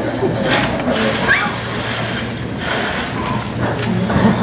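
Murmur of an audience and performers in a large hall, with a few scattered knocks from movement and a short rising squeal of a voice.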